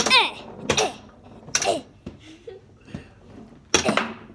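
Foosball table in fast play: a few sharp knocks of the ball against the rod figures and table walls, the loudest near the end, between short strained 'eh' grunts from a player.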